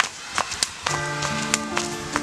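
A few sharp slaps of a twisted-grass skipping rope striking a dirt path, then background music with held chord-like notes starting about a second in.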